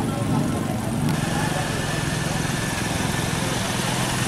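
A vehicle engine idling steadily amid the chatter of a market crowd; the engine's low, even hum comes in more fully about a second in.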